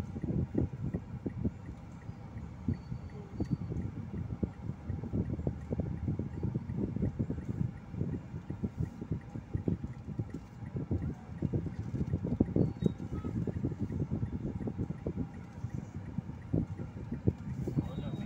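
Low, uneven rumble inside a slow-moving car's cabin in heavy traffic, with muffled voices mixed in.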